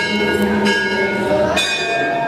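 Temple bell rung during a puja: about three strikes, each leaving a metallic ring that carries on into the next.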